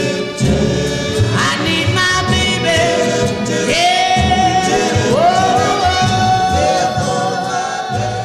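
Late-1950s R&B vocal-group recording: a lead voice and backing harmony singers hold long notes, sliding up into them, over a steady bass rhythm.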